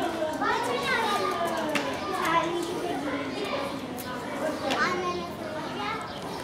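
Children's voices calling out and chattering as they play, high-pitched and overlapping.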